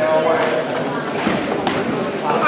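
Chatter of several voices in a large hall, with quick plastic clicking from a 2x2 speedcube (Moyu Lingpoa) being turned fast, and one sharp click near the end.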